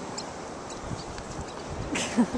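Steady wash of ocean surf and wind at the shoreline, with a few faint ticks.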